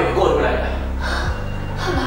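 A woman speaking in Burmese in an agitated, exclaiming way over background film music with a steady low beat.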